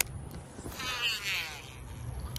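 Baitcasting reel on a cast: a sharp click as the spool is freed, then the spool whirring for about a second as line pays out, its pitch dropping as it slows.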